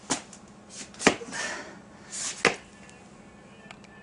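Camera handling noise: three sharp knocks about a second apart, with short bursts of cloth rustling between them, as the camera is picked up.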